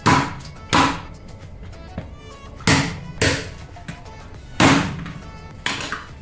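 A large kitchen knife chopping raw chicken on a plastic cutting board: six sharp, loud chops at uneven intervals, over quiet background music.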